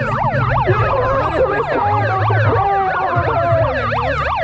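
Handheld megaphone's siren setting sounding a fast yelp, close and loud: the pitch sweeps up and down about four times a second, with overlapping sweeps and a few held tones.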